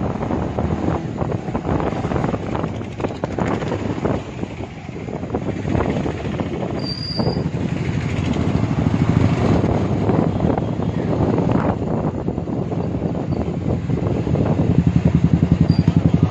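Wind rushing over the microphone and engine and road noise from a moving two-wheeler in traffic. A short high-pitched beep sounds about seven seconds in, and the noise pulses rapidly near the end.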